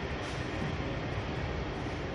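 Nippori-Toneri Liner rubber-tyred automated guideway train running along the elevated guideway past the platform, a steady running noise.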